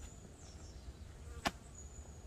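Quiet forest ambience: a low wind rumble on the microphone with faint high chirps, and a single sharp click about one and a half seconds in.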